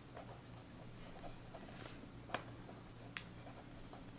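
Pen writing on paper: faint scratching strokes of handwriting with a couple of sharper ticks, over a low steady hum.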